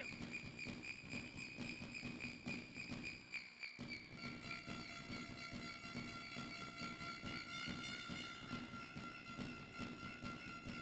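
Faint indoor basketball-game ambience: low court and crowd noise with small irregular knocks, under a steady high-pitched whine of several held tones. A new, lower tone joins about four seconds in.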